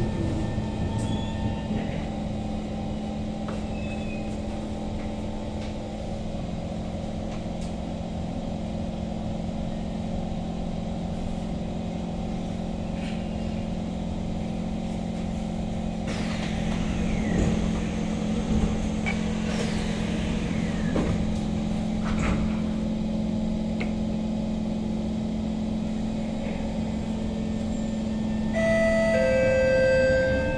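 Inside an SMRT C151 metro train running between stations: a steady rolling rumble with a steady low hum from the train's drive. A few high whines fall in pitch about halfway through. Near the end a short chime-like set of tones begins.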